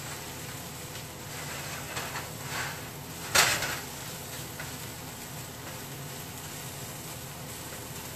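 Spatula stirring vegetables in a steel skillet over a low, steady sizzle, with a few light scrapes and one sharp scrape or knock against the pan about three and a half seconds in.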